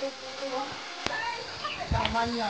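People's voices talking, with one sharp click about a second in.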